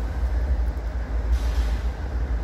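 Steady low outdoor rumble of road traffic and wind on the microphone, with a hiss swelling briefly near the end.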